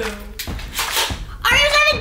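Toy foam-dart blasters firing, two quick bursts about half a second apart, followed by a raised voice.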